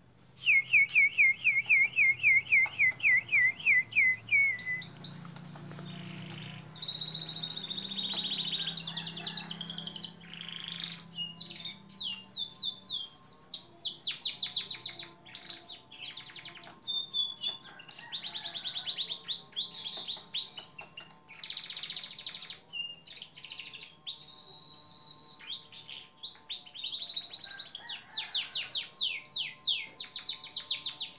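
Caged domestic canary singing a long, continuous song of rapid trills and rolls. It opens with a run of repeated downward-sweeping notes at about three or four a second, then moves through varied fast trills with only brief breaks between phrases.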